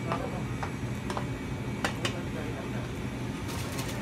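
Supermarket ambience: a steady low hum with faint background voices, broken by a few sharp clicks and knocks, several of them close together near the end.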